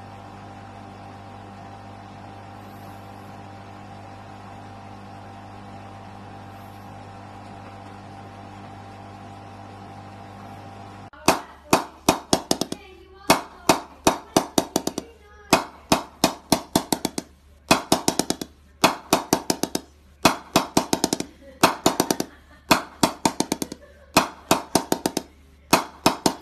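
Electric wood-lathe motor running with a steady hum as a cricket bat blade spins on it. About eleven seconds in, a wooden mallet strikes a bare willow cricket bat blade in quick clusters of sharp, ringing knocks, several to a cluster, about one cluster a second: the bat is being tapped for its ping.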